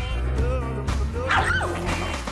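Background soundtrack music with a steady low bass. A brief high cry rises and falls about a second and a half in.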